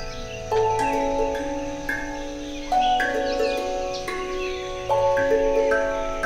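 Ambient music: a chord of several ringing tones, struck anew about every two seconds, three times, each left to ring into the next.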